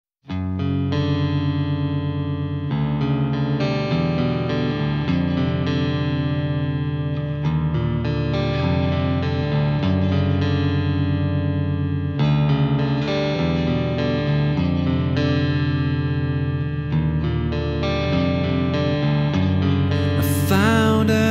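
Instrumental opening of a rock song: electric guitar through effects, over bass, playing sustained chords that change every two to three seconds. It starts abruptly a moment in.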